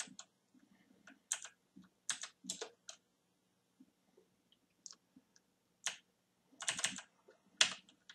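Computer keyboard keystrokes: scattered single clicks and short runs of typing with pauses between them.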